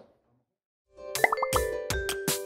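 About a second of silence, then a short channel logo jingle begins: sharp, ringing plucked notes several times a second, with a few quick rising blips near its start.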